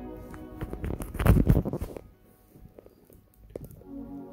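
Industrial lockstitch sewing machine running a short burst of stitching for about two seconds and then stopping, followed by a few light clicks as the fabric is handled.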